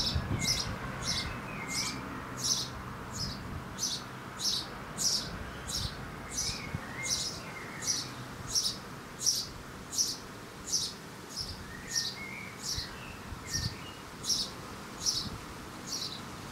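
House sparrow chirping: a steady, evenly paced series of single high chirps, about two a second.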